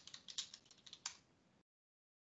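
Typing on a computer keyboard: a quick run of about ten keystrokes over the first second, then it stops.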